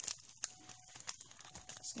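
Faint, scattered light clicks and crinkles of a small plastic zip bag of glitter and a plastic tub being handled as loose star glitter is added to a glitter mix.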